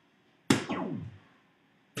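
A soft-tip dart striking a DARTSLIVE electronic dartboard about half a second in: a sharp hit followed by the machine's falling electronic scoring sound, which fades within about half a second. Another sharp hit comes right at the end.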